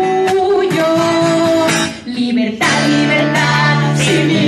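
A woman singing held notes to her own strummed acoustic guitar, with a short break in the music about two seconds in.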